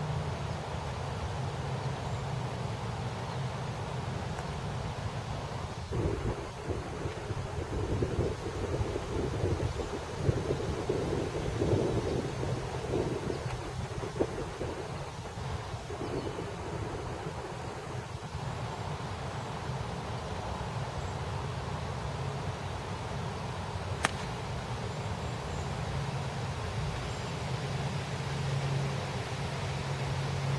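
Wind on the microphone over a low steady hum, gusting harder for a stretch in the middle, and one sharp click late on: a golf iron striking the ball from the fairway.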